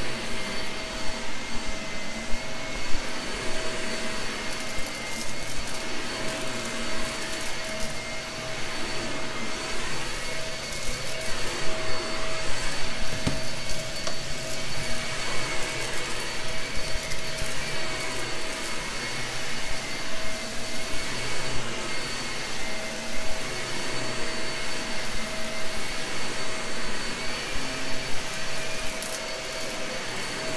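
Gray Shark vacuum running steadily while picking up a scattered mess-test mix, with a steady whine and an uneven crackle of debris.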